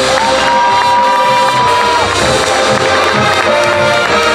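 Marching band brass and percussion playing loudly, with a crowd cheering over the music. A single high note rises in just after the start, is held, and drops away about two seconds in.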